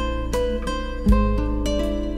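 Instrumental music: an acoustic guitar picking single notes over a deep, sustained bass, with a new bass note coming in about a second in.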